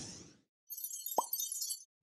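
Intro-card sound effects: a whoosh fading out, then a high glittering shimmer with a single sharp pop a little past a second in.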